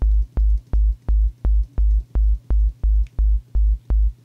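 Low sine-wave note from the Vital software synthesizer, tuned to about 50 Hz, played in short repeated stabs, about three a second. Each stab starts with a click that is sometimes louder than at other times; the clicks come from the oscillator's phase randomization, which starts each note at a random point in the waveform.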